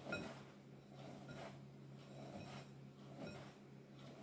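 Faint soft rustle of fingertips rubbing butter into wholemeal flour and letting it fall back into a glass bowl, in slow repeated strokes about every second and a bit, over a low steady hum.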